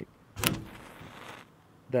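A wooden match struck against window glass: a sharp scrape about half a second in, then about a second of hiss as the match head flares and catches.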